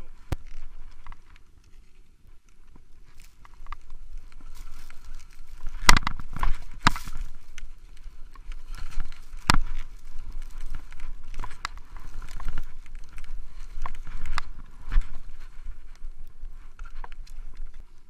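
Skis running downhill through fresh snow: a rough hiss that grows louder from about four seconds in, broken by several sharp knocks, the loudest around six to seven seconds in and again near nine and a half seconds.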